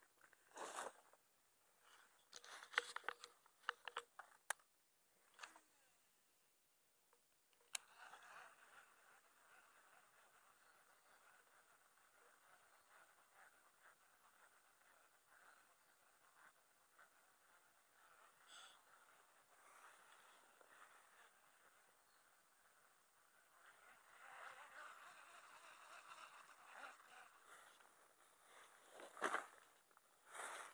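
Near silence: faint outdoor ambience with a steady soft hiss. In the first several seconds there are a few rustles and sharp clicks from walking through grass and handling a fishing rod.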